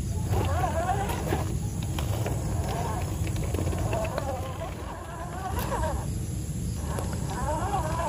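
Electric motor and gears of an RGT EX86100 V2 RC crawler whining as it crawls over wet rocks, the pitch wavering up and down with the throttle and dropping away twice for about a second, over a steady low rumble.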